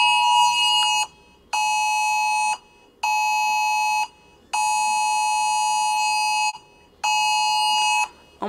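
A steady, high electronic beep tone sounding five times in uneven stretches of one to two seconds, broken by short gaps of about half a second.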